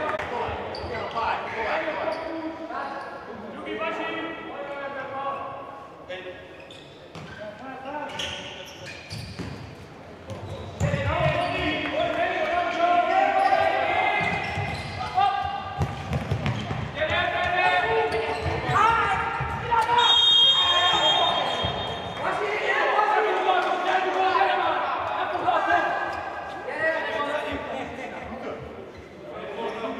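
Futsal ball being kicked and bouncing on a sports-hall floor, with players' and coaches' shouts echoing in the hall. A sharp referee's whistle blows for about two seconds, some twenty seconds in, stopping play.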